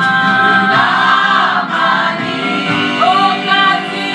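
Gospel song sung by a choir of voices, holding long notes with a steady musical backing.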